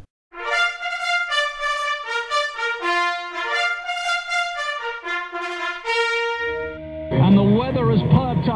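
Brass fanfare, trumpets playing a melody of short held notes. Near the end it gives way to a low hum and a man's commentary voice.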